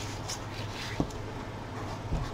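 Quiet handling of a sheet of paper with a single sharp tap about a second in, then an Arteza fineliner pen with a 0.4 mm tip starting to write on the paper, a faint scratching.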